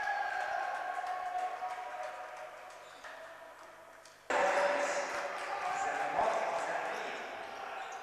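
Court sound of a basketball game in a large, echoing hall: the ball bouncing and players' voices. The sound fades over the first few seconds, then jumps back up suddenly about four seconds in at a cut.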